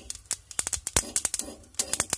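Perilla (bhangjeera) seeds crackling as they dry-roast in an iron pan, with the steel spoon scraping and tapping as it stirs them: a quick, irregular run of sharp clicks and ticks with brief scratchy scrapes between them.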